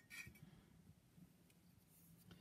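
Near silence with low room tone, and one faint short scrape about a fifth of a second in as a cut porcelain clay star is handled on the canvas-covered slab.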